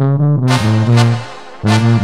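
Sinaloan banda (brass band) music: short, punchy brass phrases over strong low bass notes, with sharp drum and cymbal hits on the beats.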